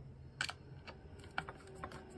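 Light, sharp clicks and taps of a thin screwdriver and a small wood screw being handled at the end of a wooden dowel. The loudest click comes about half a second in, and lighter ones follow near the end.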